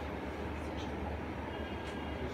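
A steady low hum and rumble, with a few faint, brief hissing sounds.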